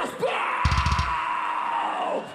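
A man's long, drawn-out yell into a stage microphone, held at one steady pitch for about a second and a half: the metal vocalist stretching out the crowd greeting "Graspop". A short run of rapid low thuds sounds under it about half a second in.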